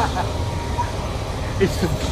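Steady low rumble of street traffic and vehicle engines, with a short laugh near the end.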